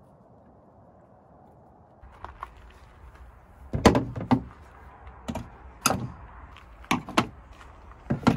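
After two seconds of faint background hum, cordless power tools and a plastic bit case are set down on a metal truck bed: a series of about six sharp knocks and clunks.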